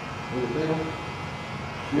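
Corded electric hair clipper running steadily against the hair. A short murmured voice comes in about half a second in.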